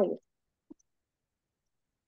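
Mostly dead silence on a video call. A spoken word trails off right at the start, and one short faint click comes a little under a second in.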